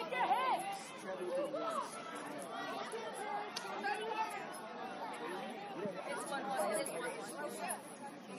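Several voices calling and shouting at once across an outdoor rugby pitch, overlapping so that no words stand out.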